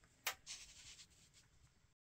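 Faint handling noises: a single short click about a quarter of a second in, then a brief light rustle that fades within about a second, as the stone nodule sits on the sand tray and the view is moved.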